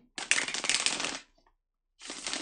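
A deck of tarot cards being riffle-shuffled by hand, a rapid rattle of cards flicking off the thumbs for about a second. After a short gap a second riffle starts near the end.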